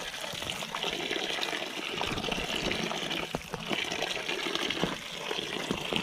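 Tap water pouring steadily into a plastic basin of water while hands scrub and turn a pile of sago roots, with light knocks and splashes as the roots are rubbed together.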